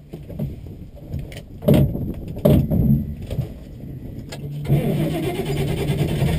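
A 1960 Willys Station Wagon's engine being restarted after stalling from carburetor trouble: a few short bursts of cranking, then the engine catches near the end and keeps running.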